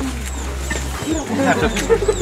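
People talking over a steady low rumble, with faint short high chirps repeating a few times a second.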